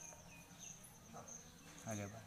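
Faint, steady high-pitched insect chirring in the background, pulsing on and off; a voice begins near the end.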